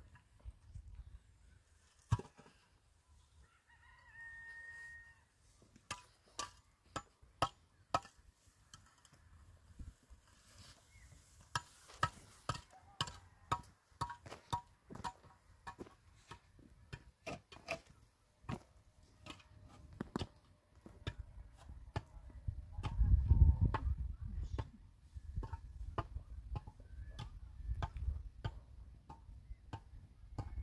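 Concrete blocks being handled and set on a block wall: a run of sharp knocks, taps and clicks of block on block. A short fowl call about four seconds in, and a louder low rumble a little after two-thirds of the way through.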